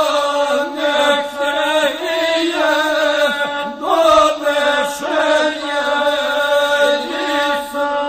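Gusle, the Balkan one-string bowed fiddle, accompanying a singer chanting an epic song. Voice and instrument hold one continuous, sliding melody over a steady held tone.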